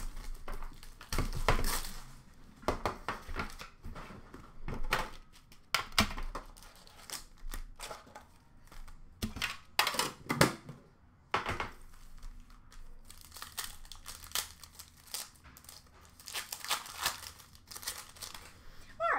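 Hockey card pack wrappers crinkling and tearing as the packs are handled and ripped open, in irregular crackles and rips, with some knocks from the metal tin being handled.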